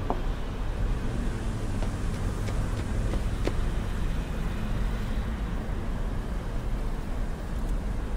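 Steady low rumble of outdoor city ambience, with a few faint clicks.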